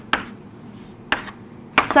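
Chalk tapping and scraping on a chalkboard as a maths symbol is written, a few short sharp taps near the start and again about a second in.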